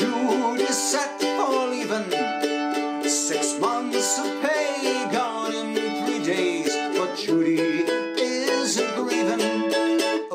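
Mandolin strummed and picked in a lively folk-song accompaniment, with a man's voice singing along.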